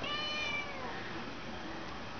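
Gray-and-white kitten meowing once, a call just under a second long that drops in pitch at the end.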